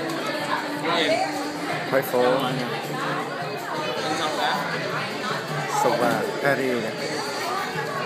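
Indistinct overlapping conversation and chatter of diners in a busy restaurant dining room.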